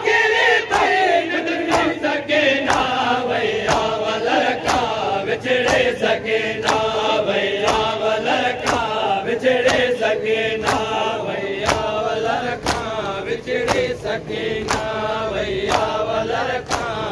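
A crowd of men chanting a Sindhi noha in unison, with sharp slaps of open hands on bare chests (matam) in time, about one a second.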